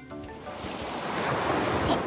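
Ocean-wave whoosh sound effect: a rush of surf noise that swells steadily louder and cuts off near the end, marking a scene transition.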